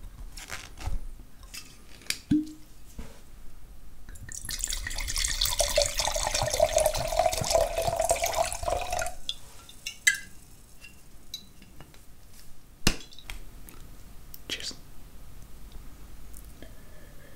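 White wine poured from a bottle into a stemmed wine glass for about five seconds, the splashing pour rising slightly in pitch as the glass fills. There are a few sharp knocks before and after the pour.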